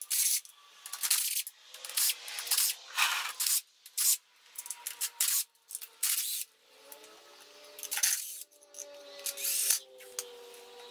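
Cordless impact driver run in a string of short bursts, about a dozen, backing out the engine side-case bolts one after another.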